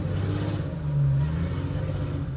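Engine of an off-road vehicle idling with a steady low rumble, picking up briefly about a second in.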